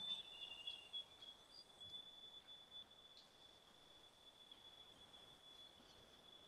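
Near silence: room tone with a faint, steady high-pitched whine, and a few faint scratches in the first seconds from a marker being drawn on paper.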